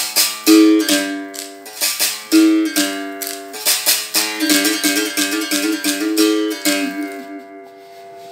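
Berimbau struck with a stick and shaken caxixi rattle, playing a long rhythm variation with the stone kept resting against the steel wire for the 'stone effect', so that each stroke's tone is altered. The notes switch between a higher and a lower pitch, and the playing fades out near the end.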